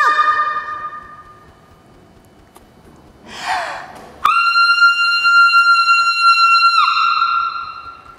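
A woman's loud, high held vocal note that drops in pitch and fades away. After a breathy intake a second, higher shrill note starts sharply, is held steady for about two and a half seconds, then falls in pitch and dies away.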